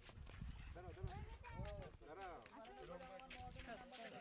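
Indistinct voices of people talking at a distance, with wind rumbling on the microphone for about the first two seconds.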